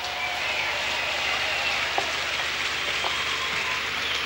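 Concert audience applauding as a song ends, a steady spread of clapping with a few faint whistles over it.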